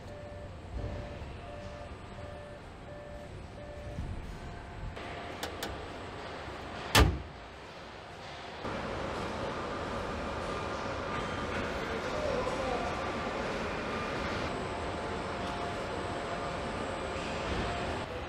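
Car assembly plant floor ambience: a machine beeper sounding about every two-thirds of a second for the first few seconds, a single loud thump about seven seconds in, then a louder steady hum of line machinery.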